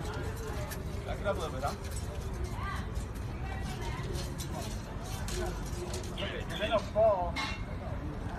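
Scattered voices of people talking in the background, one louder call shortly before the end, over a steady low rumble.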